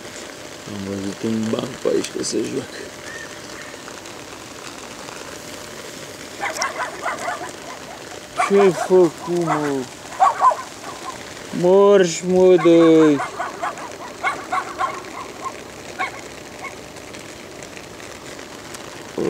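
Short bursts of a person's voice, with the loudest call about twelve seconds in, over a steady background hiss.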